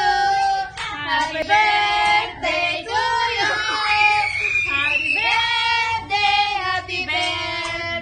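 High, child-like voices singing a melody with little or no instrumental backing.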